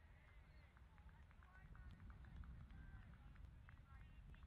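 Near silence: faint outdoor ambience, with a low rumble and many faint short high chirps.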